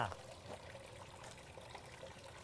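Faint, steady hiss of background noise with no distinct sounds in it.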